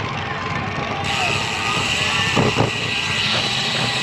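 Wind rushing over an action camera's microphone on a moving road bike, with tyre and road noise underneath. The rush is steady, and a higher hiss joins about a second in.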